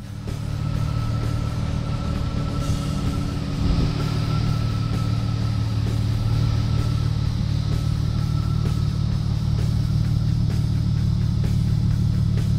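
Background rock music with guitar, playing steadily.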